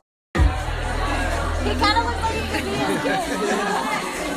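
House-party sound recorded on a phone: music with a heavy bass line under a crowd of people talking and shouting. It starts after a brief silent gap, and the bass drops out about three seconds in.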